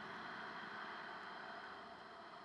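One long Ujjayi pranayama breath: a faint, steady, hissing throat breath that slowly fades toward the end.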